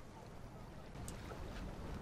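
Faint, low rushing rumble from a TV drama's soundtrack, growing slightly louder, with a few soft ticks.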